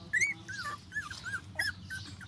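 Newborn puppies whimpering: a string of about six short, high squeaks in two seconds, each rising then falling in pitch.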